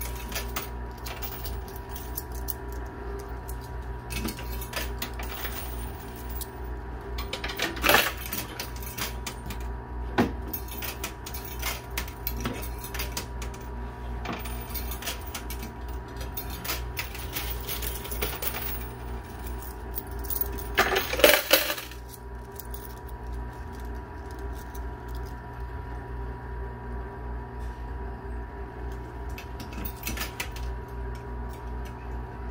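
Quarters clinking and clattering in a coin pusher arcade machine as coins are dropped in and pushed across the shelves, with two louder spells of coin clatter, about eight and about twenty-one seconds in. A steady machine hum runs underneath.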